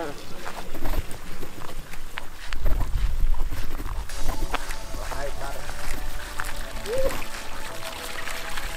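Wind rumbling on the microphone and footsteps on grass, with scattered clicks and a brief vocal sound near the end.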